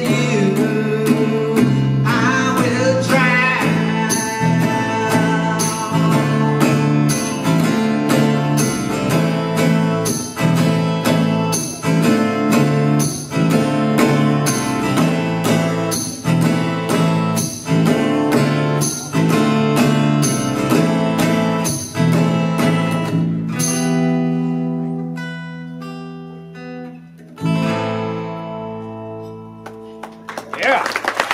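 Live rock band playing the instrumental outro of a song: strummed acoustic guitar, electric bass and drums with conga, in a steady beat. About 24 seconds in, the beat stops and the final chords ring out and fade.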